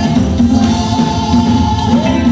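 Live gospel praise song: a group of women singing together, with held notes, over band accompaniment.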